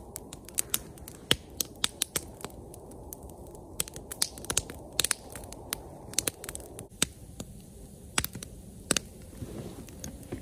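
Wood fire crackling, with sharp irregular snaps and pops several times a second over a steady low rushing noise.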